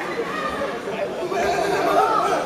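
Indistinct chatter: several people talking at once in a large hall, no single voice standing out.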